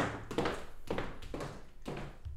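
High-heeled shoes clicking on a hard floor, about two steps a second, fading as the walker moves away.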